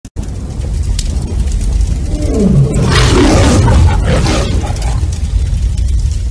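A big cat's roar over a loud, steady low rumble, its pitch falling about two and a half seconds in, then swelling loudest around three to four seconds.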